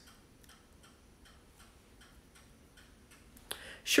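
Faint, regular ticking of a clock in a quiet room, with a short sharp sound about three and a half seconds in.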